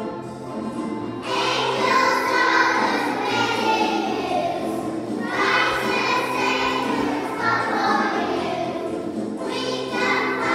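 A large group of young children singing a song together over musical accompaniment. New sung phrases start about a second in, about five seconds in, and near the end.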